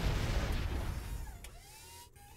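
Explosion-like noise from a cartoon soundtrack, loud at first and dying away over about two seconds, with faint gliding tones near the end.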